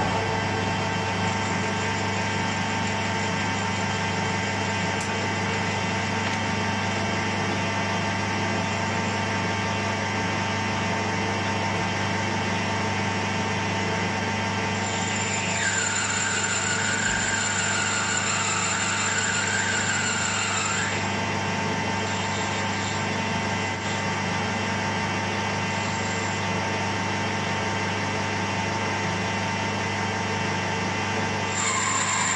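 Metal lathe running steadily with a motor and gear hum while turning a brass rod. For about six seconds midway, a higher, wavering whine joins as the tool cuts the brass.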